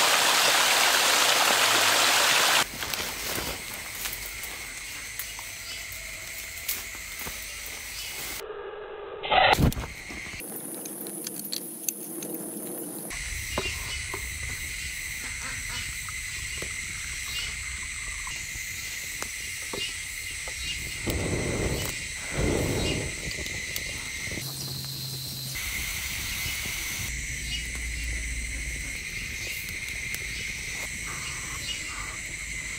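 A mountain stream rushes over rocks for the first couple of seconds. After a sudden cut it gives way to a quieter outdoor bed: a small wood fire crackling under a split-bamboo cooking tube, with a steady high tone behind it and a few louder brief sounds partway through.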